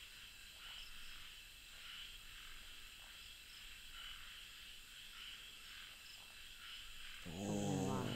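Night-time chorus of crickets chirping steadily with a regular pulse. Near the end a low voiced sound comes twice, louder than the insects.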